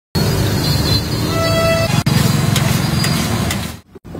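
Busy roadside traffic noise with a short car-horn toot about a second and a half in, over the hiss of potato slices frying in a large wok of hot oil.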